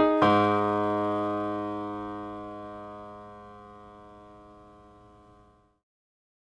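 Closing music: a single keyboard chord struck just after the start, left to ring and fading out slowly over about five seconds.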